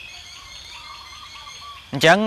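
Faint background bird calls: a run of short whistled notes, over a steady high-pitched tone.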